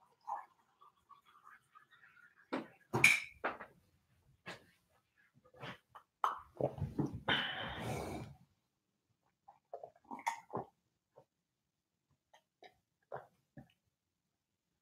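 Scattered knocks and light clatter from someone fetching a cup of water in a kitchen, the loudest knocks about three seconds in, with a brief rush of noise lasting about a second around the seven-second mark. A few faint clicks follow as he drinks from the cup near the end.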